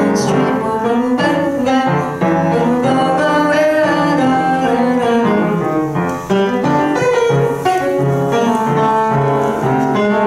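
Upright acoustic piano played in a jazz style, a continuous flow of chords and melody notes, with brief breaks in the phrasing about two and six seconds in.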